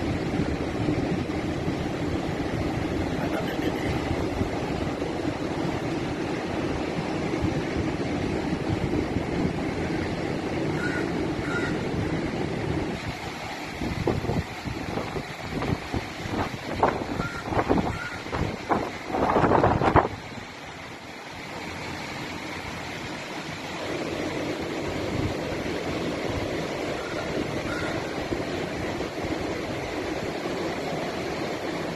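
Strong wind buffeting the microphone over the steady rush of heavy surf. About halfway through, a run of louder, irregular gusts hits the microphone for several seconds, then the sound drops quieter for a few seconds before the steady rush returns.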